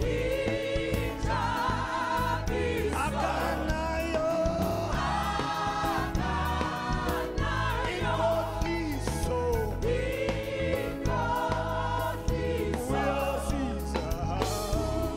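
Live gospel praise-and-worship song: a lead singer and a choir of backing singers over a band of drum kit, bass guitar, keyboard and timbales.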